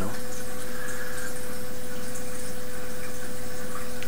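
Steady background noise: an even hiss with a constant mid-pitched hum underneath, and no distinct event.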